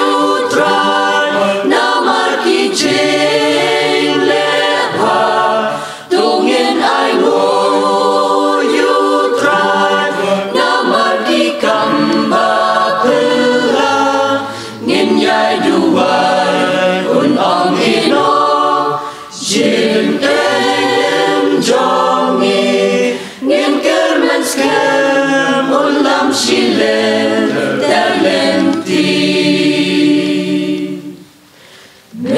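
A mixed choir of women and men singing a cappella, several voices together in sustained phrases, with brief pauses for breath between phrases.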